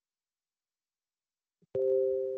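Computer notification chime: two steady tones sounding together, starting sharply near the end and fading, as desktop notification pop-ups appear.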